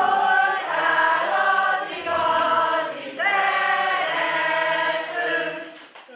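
A group of elderly women singing a Hungarian grape-harvest folk song together in long held notes, with short breaks between phrases about two and three seconds in.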